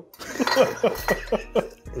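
A man laughing: a quick run of about eight short, breathy bursts, each falling in pitch.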